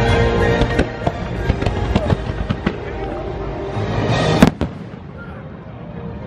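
Fireworks show bursting overhead: a quick run of pops and bangs over the show's music soundtrack, then one loud bang about four and a half seconds in, after which it goes quieter.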